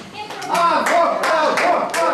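Audience applause after a tune ends: scattered hand claps mixed with many voices talking and calling out.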